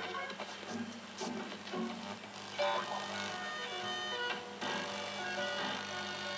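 Cartoon soundtrack music playing through the small built-in loudspeaker of a Record V-312 black-and-white valve television, with a steady low hum underneath.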